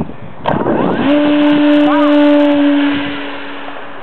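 Electric motor and propeller of a large radio-controlled glider running under power just after a hand launch: a loud, steady drone that sets in about a second in and fades away near the end as the glider climbs off.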